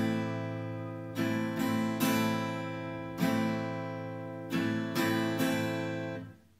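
Steel-string acoustic guitar strumming one chord in a 4/4 pattern, twice through: a down-strum held, then three quick strums close together, the last one left ringing. The strings are damped and the sound stops right at the end.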